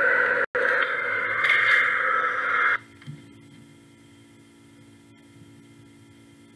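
Steady hiss of a recording's background noise, with a brief dropout about half a second in, that cuts off suddenly just under three seconds in. After that only a faint steady electrical hum remains.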